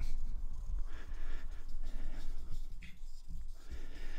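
A tomo nagura stone rubbed back and forth on a Japanese natural whetstone of the hard suita layer, a quiet, uneven scraping that raises slurry only slowly.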